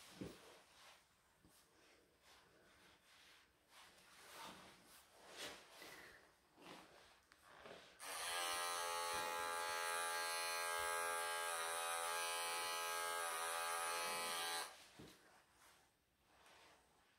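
Electric pet clippers, Wahl professional type, switched on about halfway through. They run with a steady buzz for six or seven seconds, shaving a tight mat out of a longhaired Persian cat's coat, then switch off. Before that there are faint soft rustles of fingers working in the fur.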